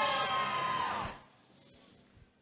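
Short musical jingle from the match-results screen: several held notes that bend down in pitch and stop about a second in, leaving only faint background noise.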